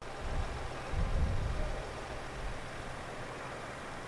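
Outdoor background noise: a steady low rumble with a hiss, swelling briefly about a second in.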